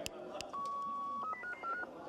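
Electronic beeps: two sharp clicks, then a steady beep held for under a second, then a quick run of five or six short beeps at shifting pitches.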